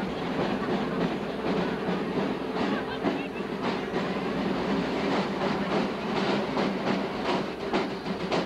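Steady parade street noise: a droning, clattering rumble with a couple of steady low tones and sharp percussive hits that become more frequent near the end, as drumming starts up.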